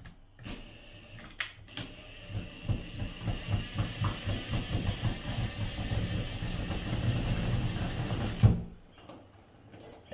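Cordless drill driving a screw into a spring toggle in hollow drywall, running in rapid low pulses that grow louder as the toggle draws tight against the wall. It stops with a sharp knock near the end.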